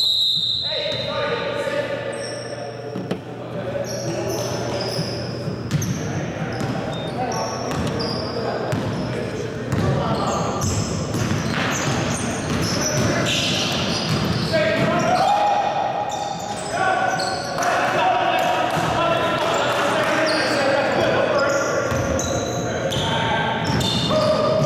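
Basketball game sounds in a gym: the ball bouncing on the hardwood court, many short, high sneaker squeaks and players' voices, with the echo of a large hall.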